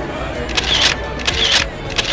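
iPhone 12 Pro camera shutter sound playing from the phone's speaker as selfies are taken: short, crisp shutter clicks repeated about 0.7 s apart, twice, with a third starting at the very end.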